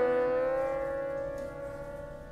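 Siddha Veena, a lap-played slide guitar, ringing on after one plucked note: the note dips slightly in pitch under the slide, then holds steady and slowly fades, with other strings sounding steadily beneath it.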